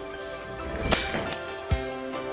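A golf swing trainer's weighted head swishes through the swing and gives a sharp click about a second in, then a lighter second click. The click is the trainer's speed signal: the swing has passed the speed set on its dial. A short low thud follows near the end, over background music.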